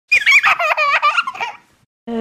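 A young child giggling: a run of quick, high-pitched laughs that wobble up and down in pitch and stop about a second and a half in.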